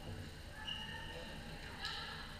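Floorball game play in a sports hall: short, high-pitched squeaks of players' shoes on the court floor, and near the end a sharp click of a stick striking the plastic ball, over faint voices.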